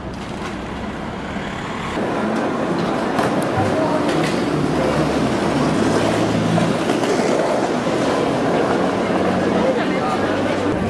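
City street ambience: a steady hum of traffic, then from about two seconds in a louder busy pedestrian street with many people talking indistinctly.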